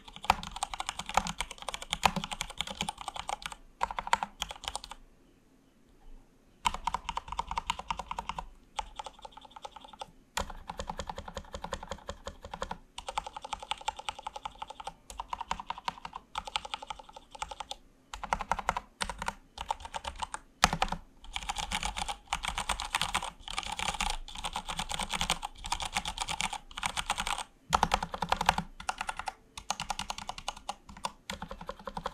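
Typing on a Durgod Fusion 65% mechanical keyboard with Cherry MX Red linear switches and PBT double-shot keycaps in a plastic case: fast, continuous runs of key clicks. The typing stops for about two seconds about five seconds in, then carries on with only brief breaks.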